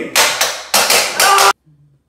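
Three loud, sharp knocks or bangs, roughly half a second apart, from hands working at a kitchen counter. A voice sounds over the last one, and the sound cuts off suddenly about a second and a half in.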